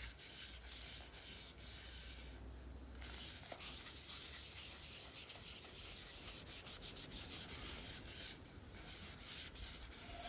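Faint rubbing of a cloth wiped by a gloved hand over the inside of a turned spalted-oak bowl with epoxy resin inlays, in short, irregular strokes.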